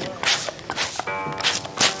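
Hand-held spray bottle misting water onto a painting: quick hissy sprays, about three a second. Soft background music plays under them.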